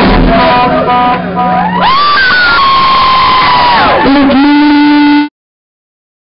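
Live rock band playing loudly, with a long held note that slides up, holds and falls away over the band, followed by a lower held note. The sound cuts off abruptly about five seconds in.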